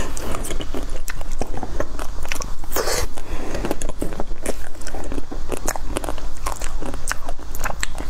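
Close-miked chewing of crunchy chocolate-coated snack cubes: a dense, irregular run of small crunches and crackles as the shells break between the teeth.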